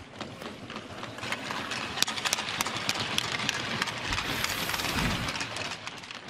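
Ice-level hockey arena sound: a steady wash of background noise with scattered sharp clicks and scrapes of sticks and skates on the ice, and a brief low rumble near the end.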